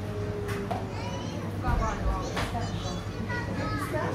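Indistinct chatter of several people's voices in a small shop, some of them high-pitched, over a steady low hum. A dull low thump comes just before two seconds in.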